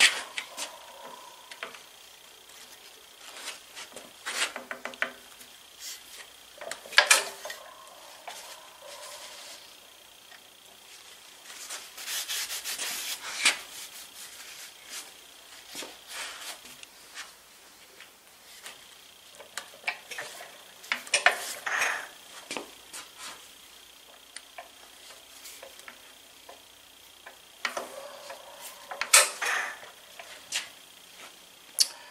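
Hand work on a stopped antique engine's flywheel and shaft: irregular metal-on-metal clinks, a few ringing briefly, mixed with rubbing and scraping, with a longer scrape about twelve seconds in. The engine is not running.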